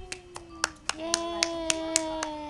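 Hands clapping in a steady beat, a little under four claps a second, over a voice holding one long sung note that dips and steps up in pitch about a second in.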